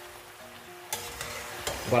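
Wok of squid cooking in oil and white wine, sizzling, with a sudden burst of sizzling and spattering about a second in as wet boiled artichoke pieces drop into it from a metal skimmer.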